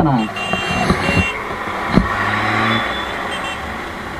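Road traffic at a city junction: a steady hum of vehicles, with a run of short high-pitched beeps in the first second and a brief low tone about two seconds in.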